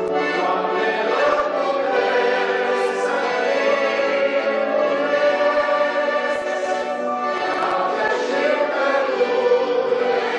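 Church congregation singing a hymn in D major, many voices together in long sustained lines.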